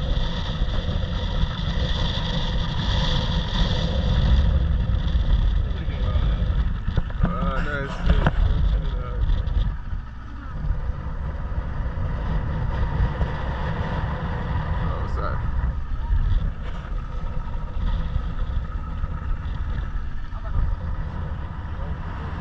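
Outboard motor running steadily at cruising speed, pushing a small open boat across the sea, with a heavy low rumble and a steady whine over it. The level dips briefly about ten seconds in.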